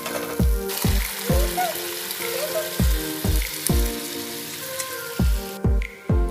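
Onion-tomato masala frying in a nonstick pan, a steady sizzle as it is stirred with a wooden spatula; the sizzle cuts off near the end. Background music with a steady beat plays throughout.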